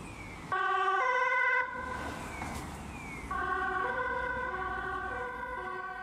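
Two-tone emergency-vehicle siren alternating between a high and a low note about every half second. It comes in suddenly about half a second in, drops back briefly and comes up again a few seconds in.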